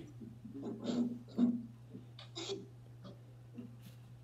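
Brief, faint voice sounds, unintelligible mumbles or breaths, in short bursts during the first half, over a steady low electrical hum.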